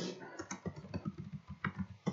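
Typing on a computer keyboard: a quick, uneven run of keystrokes.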